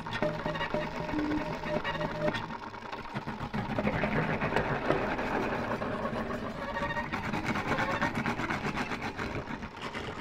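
Improvised violin played through electronic effects: short held notes at first, then a dense, rapidly pulsing texture from about four seconds in.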